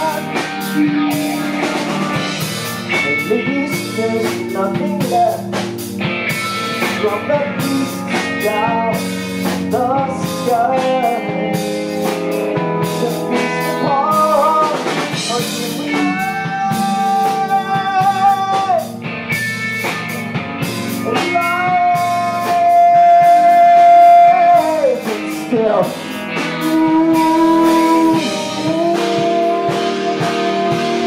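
Live blues-rock band playing loud: electric guitars, drum kit and keyboard, with a lead line of long held notes that bend and slide down at their ends, the longest and loudest a little past the middle.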